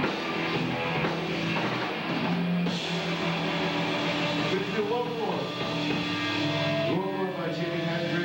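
Live rock band playing at full volume: distorted electric guitars, bass and drum kit, with a singer's voice over them.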